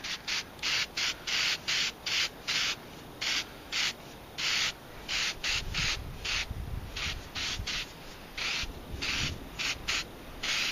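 Aerosol spray paint can (Rust-Oleum Camouflage, beige) spraying in many short hissing bursts, about two to three a second with a few longer ones, laying the light base coat on a knife blade.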